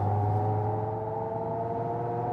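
Genesis GV70 EV's synthetic active sound design in Sport mode, heard in the cabin under hard acceleration at motorway speed: a chord of several steady tones rising slowly in pitch as the car gathers speed, over a low steady cabin hum.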